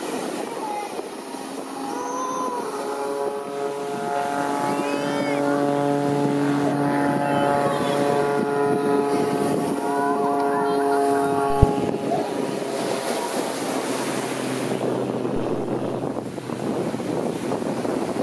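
Single-engine aerobatic propeller plane's engine humming at a steady pitch, coming in a few seconds in and cutting off suddenly with a click about two-thirds of the way through, over wind and surf noise.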